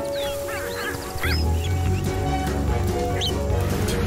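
Small bird chirps, quick rising and falling calls in a cluster through the first second and a half and once more near the end, over soundtrack music with a low sustained bass that comes in about a second in. A steady hiss of rain runs underneath.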